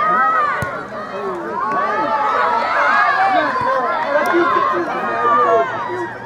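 Many voices shouting and calling at once from soccer spectators and players, a loud overlapping babble of yells that runs through the whole stretch.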